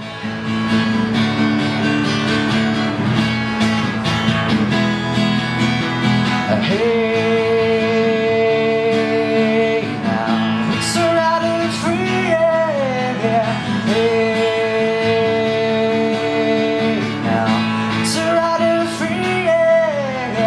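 Strummed acoustic guitar with a man's voice singing long, drawn-out held notes over it, each sliding into pitch.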